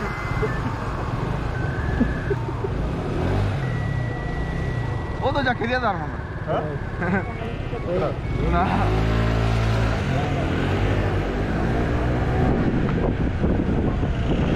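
Street traffic heard from a motor scooter, with voices talking in the middle. About eight and a half seconds in, a steady engine note comes up and the noise grows as the scooter pulls away.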